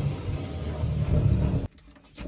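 Wooden chair dragged across a hardwood floor, a low rumbling scrape that cuts off suddenly near the end.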